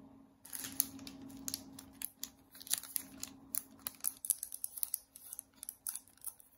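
Plastic sleeves around banknote bundles crinkling and clicking as they are handled, a quick irregular run of light crackles and taps.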